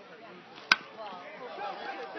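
Baseball bat striking a pitched ball once, a single sharp crack about two-thirds of a second in: the solid contact of a Little League home-run hit.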